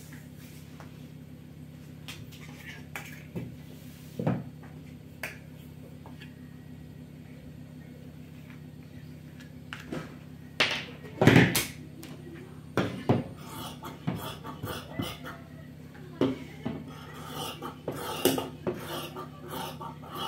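Plastic pattern ruler knocked and shifted on a cutting table, with a loud knock about 11 seconds in, followed by metal scissors cutting through fabric, a run of quick snipping clicks in the second half. A steady low hum runs underneath.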